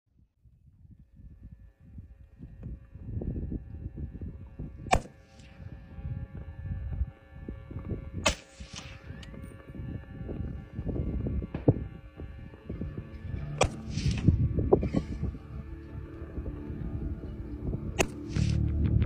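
Four rifle shots from a SIG Tread rifle in 7.62, each a sharp crack, a few seconds apart, with a short echo after some of them. A low, gusty rumble of wind on the microphone runs underneath.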